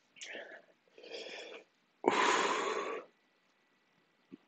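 A man breathing hard through his mouth against the burn of a Dorset Naga chili pod: two short breaths, then a loud, hissing exhale about two seconds in that lasts about a second.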